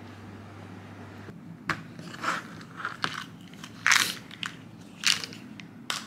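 A low steady hum, then after about a second a string of sharp, irregular clicks and crackles, the loudest about four and five seconds in, as a white plastic weekly pill organizer is handled and its snap lids worked.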